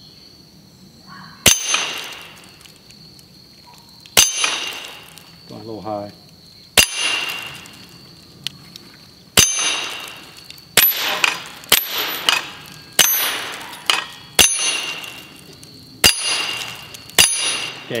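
A Volquartsen .22 pistol fired about a dozen times: single shots roughly every two and a half seconds at first, then a quicker string. Many shots are followed by the ring of a steel target being hit.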